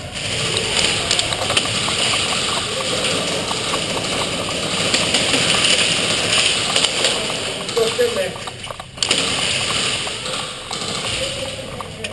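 Indistinct voices in a steady, noisy din with many scattered small clicks. The din drops briefly about nine seconds in.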